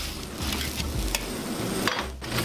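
Vegetables sizzling in a hot wok as they are stir-fried, with a metal ladle clicking against the wok a couple of times.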